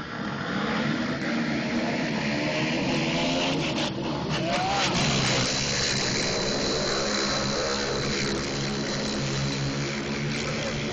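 Several small racing engines running hard together on a dirt flat-track oval, their notes rising and falling as they race through a turn.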